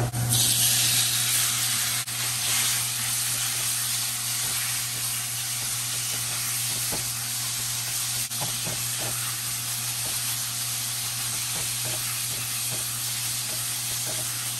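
Marinated sliced beef dropped into a hot wok of frying garlic: a sudden burst of loud sizzling that settles into steady frying. The spatula gives a few light ticks against the pan as the meat is stirred.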